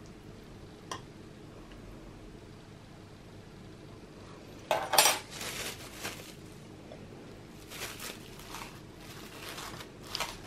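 Metal spoon clinking against glass dessert bowls: a light tap about a second in, then a louder clatter of several knocks about five seconds in, with softer handling knocks later.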